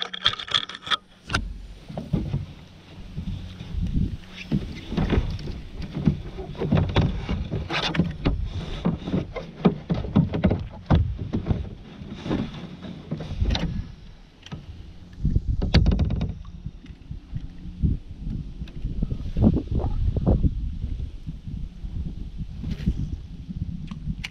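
Kayak being paddled: paddle strokes swishing and splashing through the water in an uneven rhythm, about one every half second to second. A few sharp knocks sound against the plastic hull.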